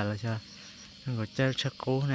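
An insect, likely a cricket, chirping faintly in quick runs of high pulses under a man's voice saying short syllables. The voice is the loudest sound.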